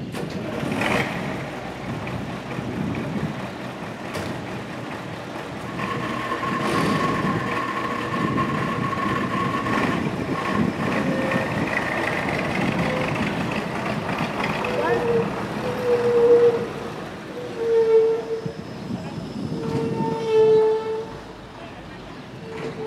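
Street sound from a film: a dump truck's engine running, then the truck pulling away. In the last several seconds, people's voices call out in short, loud bursts.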